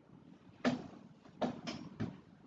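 Three sharp knocks over a faint background hiss: one about two-thirds of a second in, the loudest, then two close together near the end, each dying away quickly.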